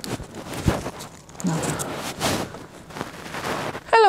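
Clump of mint roots being torn out of soft garden soil by gloved hands: irregular crackling and tearing of roots with crumbling soil, and one sharp snap just under a second in.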